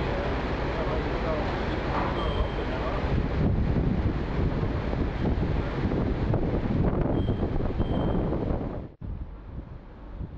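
Construction machinery on a river piling site running steadily, with faint shouted voices in the first few seconds and a few short high beeps; the noise cuts off about nine seconds in.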